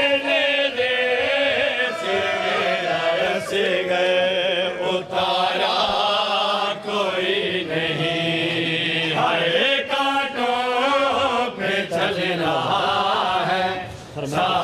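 A group of men chanting a Punjabi noha lament together, with drawn-out wailing lines, and a few sharp slaps at uneven intervals, typical of matam chest-beating.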